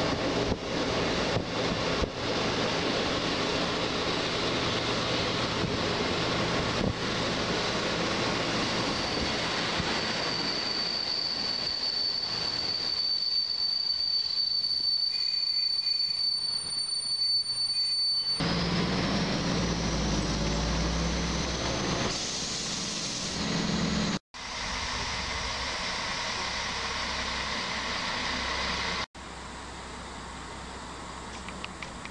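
Passenger train running, heard from inside the carriage: steady rolling noise, with a single high, steady squeal from the wheels and rails for several seconds as it draws alongside a station platform. Just past the middle the sound changes abruptly to a deeper rumble, broken twice by brief gaps.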